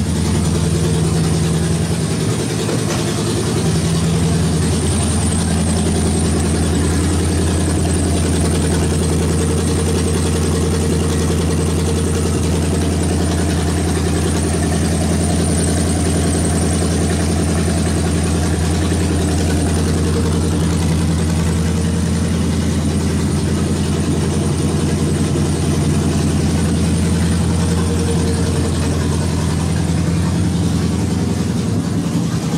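1979 Chevrolet Monza Spyder's engine, fitted with Edelbrock valve covers, idling steadily at an even speed.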